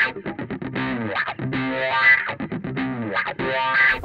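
Background music led by a distorted electric guitar, playing fast choppy notes with bending pitch.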